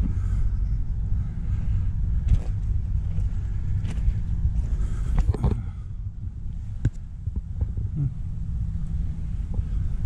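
A steady low rumble of wind on the microphone, with a few scattered crunching clicks of footsteps on gravel track ballast.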